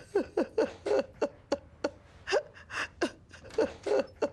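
A woman sobbing in short gasping breaths, each a quick falling whimper, about three a second.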